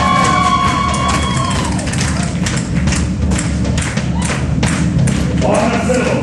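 Live Celtic rock band playing. A held note dies away in the first two seconds, then sharp drum strokes, about four a second, carry on over a steady bass.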